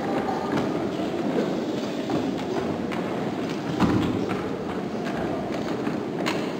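Children's footsteps knocking irregularly on hollow wooden stage risers as a choir moves into place, over a steady background hum of the hall.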